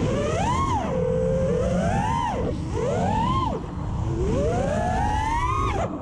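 Racing quadcopter's iFlight XING 2207 2450 kV brushless motors and propellers whining, the pitch swelling and falling with the throttle four times. The last swell is a long, slow climb that cuts off just before the end, all over a steady low rumble.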